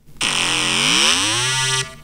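Moog Model D synthesizer app on an iPhone playing one bright, buzzy synth tone for about a second and a half, its pitch dipping and then rising back before it cuts off near the end.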